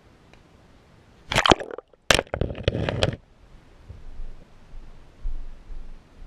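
Two short bursts of crackling and knocking close to the microphone, one about a second in and a longer one from about two to three seconds in, typical of a camera being handled.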